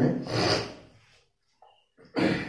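A brief rustling, rubbing noise that fades away within about a second.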